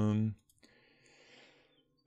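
A man's drawn-out hesitation 'euh' that trails off about a third of a second in, then near silence with a couple of faint clicks.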